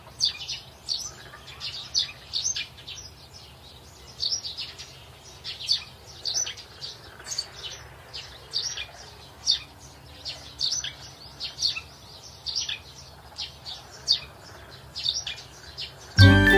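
Small birds chirping in quick, short, high calls, several a second, over a faint low hum.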